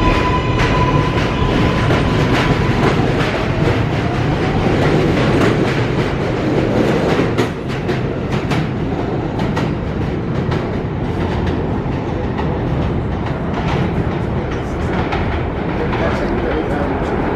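An R160 subway train's electric traction motors whine as it pulls out: a rising tone with overtones that levels off and holds for about three seconds over a steady rumble. In the second half the train's wheels rumble steadily, with frequent sharp clicks as they cross rail joints and switches.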